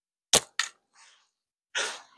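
A slingshot shot from a Cygnus Bold frame with flat rubber bands: one sharp crack as the bands and pouch are released, then a second, weaker crack about a quarter second later as the ammo strikes the target.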